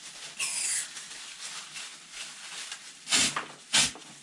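A brief hiss about half a second in as a cleaner can is screwed onto a spray-foam applicator gun. Near the end come two short squirts of cleaner sprayed through the gun, about half a second apart, to flush out the foam.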